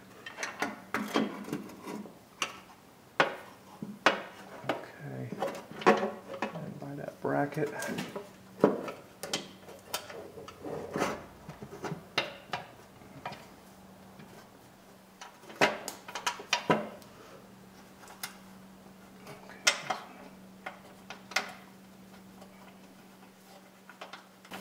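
Steel transmission pan and its loosely fed-through bolts clinking and knocking against the transmission as the pan is fitted up into place and the bolts are worked into their holes by hand. Irregular metallic clicks and knocks.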